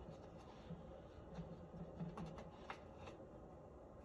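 Faint handling noise: light rustling and a few soft clicks as hands work at a plastic bag.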